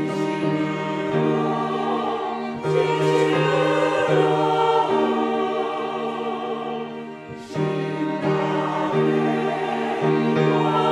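Church choir singing a hymn with two violins accompanying. There is a short break between phrases about seven seconds in.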